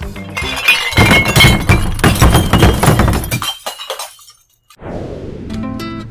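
Glass bottles crashing and shattering: a loud crash of breaking glass full of clinking that lasts about two and a half seconds and dies away. Near the end a short music sting comes in.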